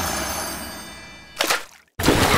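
A high, bell-like metallic ringing sound effect that fades away over about a second and a half, followed by a short burst of sound and a moment of silence.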